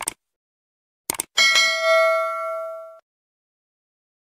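Two quick clicks, then a bell-like ding that rings for about a second and a half and cuts off suddenly. It is the sound effect of a subscribe-and-notification-bell button animation.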